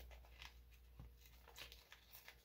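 Near silence with a few faint, soft paper noises: a thin coffee filter being torn by hand along its folded edge.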